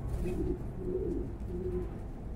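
A pigeon cooing in several short, low phrases, one after another.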